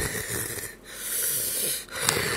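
Raspy, wheezing breaths close to the microphone, each about a second long, with short breaks between them.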